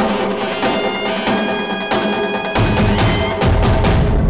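Dramatic background score: rapid, repeated drum and wood-block strikes over held tones, with a deep drum coming back in about two and a half seconds in.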